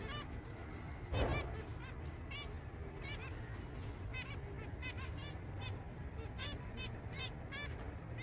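Zebra finches calling in a cage: a run of short repeated calls, about two or three a second.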